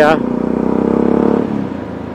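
Motorcycle engine running under way, with a steady engine note that swells for about a second and then eases off about a second and a half in.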